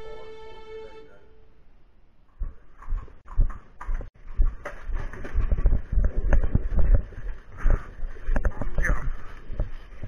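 Music fades out over the first second or so. Then a harnessed horse walks on gravel, hitched to a trotting sulky: irregular hoof thumps mixed with knocks and rattles from the sulky and harness.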